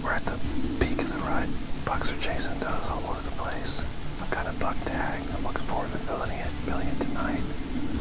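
A man whispering, keeping his voice low in a hunting blind.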